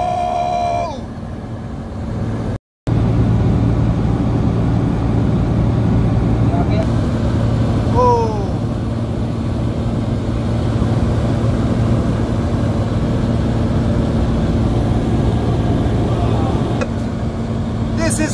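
Light propeller aircraft's engine droning steadily, heard inside the cabin, with a brief voice about eight seconds in.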